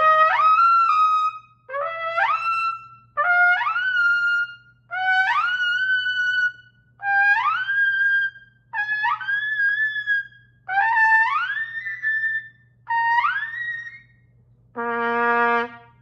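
King 1117 Ultimate marching B-flat trumpet ripping up from below into a held high note eight times. The target climbs a little higher each time, into the double-high register that the player finds poorly slotting on this horn. A shorter, lower held note follows near the end.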